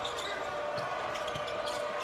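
Sounds of a basketball game in a large arena: a ball being dribbled on the hardwood court and sneakers squeaking, over a steady crowd hubbub.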